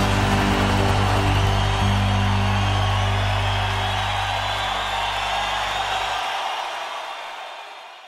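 A live rock band's final chord rings out, its low held notes dying away about halfway through, while the concert audience cheers. Everything fades out near the end.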